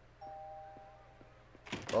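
A doorbell chime: two tones sounding together, ringing and fading away over about a second.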